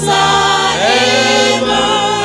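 Voices singing a hymn over electronic keyboard accompaniment, with long held notes sung with vibrato over sustained keyboard chords.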